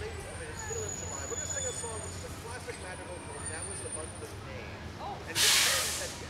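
Low murmur of people talking, then near the end a sudden loud hiss lasting under a second.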